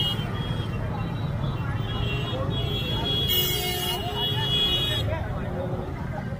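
Motorcycles and scooters idling in a stalled street traffic jam, a steady low engine rumble, with background voices. Vehicle horns sound from about two seconds in until about five seconds, loudest for a moment around three and a half seconds in.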